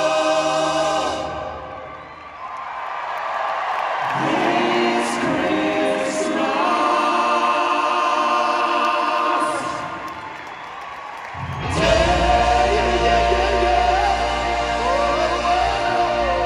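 Live amplified concert music in an arena: a choir-like group of voices sings sustained chords over a band. The sound thins out twice and swells back, and about three-quarters of the way through the full band comes back in loud with deep bass.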